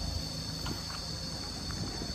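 Steady high-pitched drone of a tropical forest insect chorus, with a few faint clicks.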